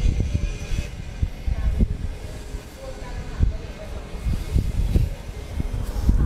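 Heavy denim jackets being rummaged through and pulled out of a pile: irregular dull thumps and rustling of the cloth being handled.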